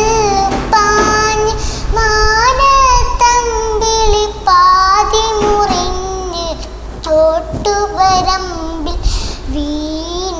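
A young girl singing a Malayalam song, holding long notes with small turns and slides in pitch.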